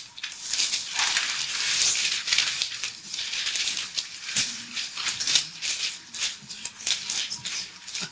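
Many students leafing through their thick AISC steel manuals at once: a continuous papery rustle of pages being flipped, full of small sharp flicks, a little busier in the first half.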